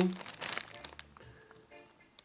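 Clear plastic bag crinkling as a hand handles the controller inside it. It is loudest in the first half second and fades to faint rustles, with a few brief, faint steady tones near the middle and end.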